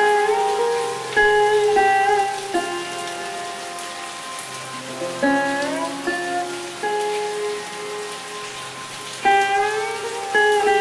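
Sitar playing a slow melody of plucked notes, some bent upward in pitch, over a steady hiss of recorded rain. The playing thins out in the middle, and a new phrase is struck near the end.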